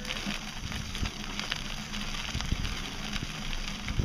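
Bicycle tyres rolling along a gravel trail, heard from a camera mounted low on the bike: a steady rumble of wheel and wind noise, with many small sharp clicks and knocks from grit and bumps.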